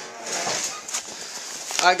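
Rustling and handling noise of a handheld camera while a bundle of mail and packages is carried, with a sharp click near the end; a man's voice starts just as it finishes.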